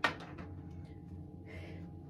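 A short, sharp knock right at the start that dies away quickly, then quiet room tone with a steady low hum and a faint breathy noise shortly before the end.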